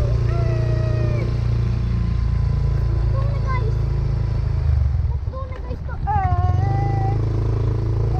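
Motor scooter riding along, its engine and wind on the microphone making a steady low rumble. A child's high voice calls out over it, briefly near the start and in a longer drawn-out call about six seconds in.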